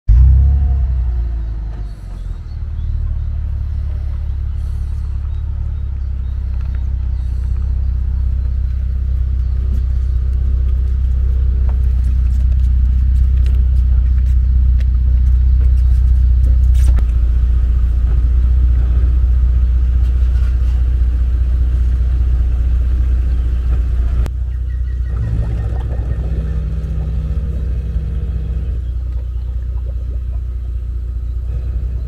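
A car's engine running at low speed while it reverses a boat trailer down a concrete slipway: a steady low rumble that grows louder toward the middle and drops suddenly about three-quarters of the way through.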